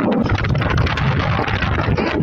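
Wind buffeting the microphone of a motorcycle riding at speed: a loud, steady rush with a low, fluttering rumble.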